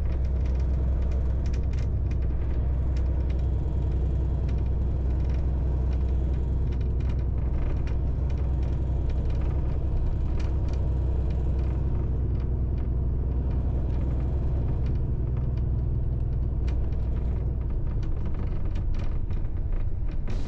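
Steady low rumble of a moving bus heard from inside the cabin: engine and road noise with faint, scattered ticks and rattles.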